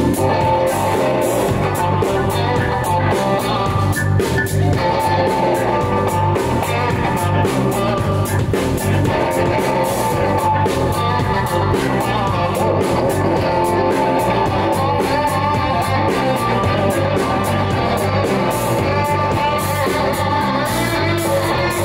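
Live blues band playing an instrumental passage: electric guitar playing lead over a steady bass and drum groove.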